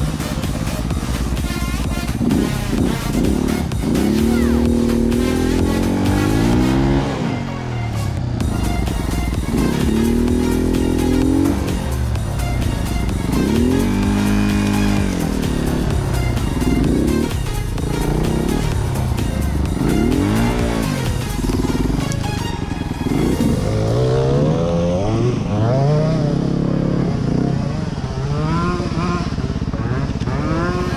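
Enduro dirt bike engine revved up and down over and over while riding a trail, each rev a rising then falling pitch every couple of seconds.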